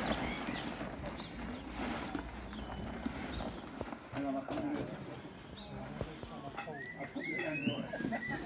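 Quiet outdoor background: faint, scattered voices and short bird chirps over a low steady rumble, with no single sound standing out.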